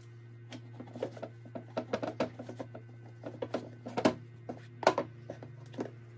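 Leather boots being laced and handled, with laces drawn through metal eyelets and hooks: a run of irregular clicks and rustles, loudest about four and five seconds in, over a steady low hum.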